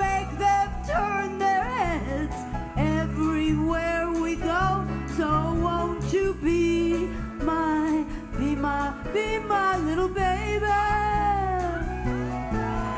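A singer with a live band. The voice slides up and down through long, bending notes over a steady bass line.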